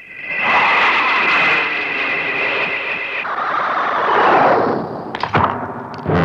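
Sci-fi sound effect: a high, steady electronic whine over a loud hissing rush that swells and then fades, ending in a few sharp crackles about five seconds in. It accompanies a villain materializing in a cloud of smoke.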